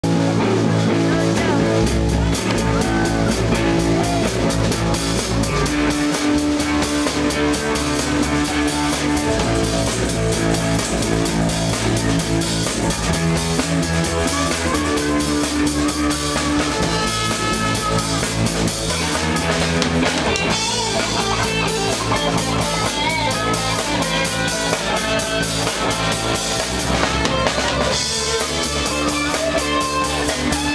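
Live rock band playing: a drum kit with a steady cymbal beat, an electric guitar and a bass guitar, all at a loud, even level.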